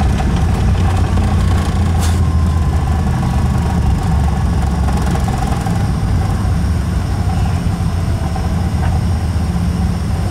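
Cabin noise of an Embraer ERJ-145LR slowing on the runway after landing: a heavy, steady rumble from its Rolls-Royce AE 3007 engines and the rolling wheels, with a faint whine dropping slightly in pitch. A brief click about two seconds in.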